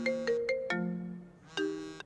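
Mobile phone ringtone playing a melodic tune of struck, ringing notes, which cuts off suddenly at the end as the call is answered.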